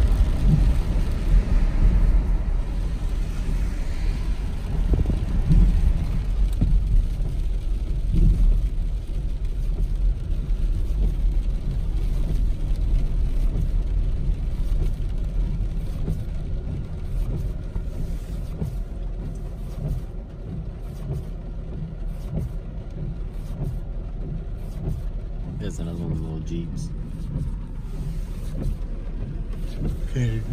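Car driving on a wet road, heard from inside the cabin: a steady low rumble of engine and tyres, louder over the first several seconds and easing off after about twenty seconds.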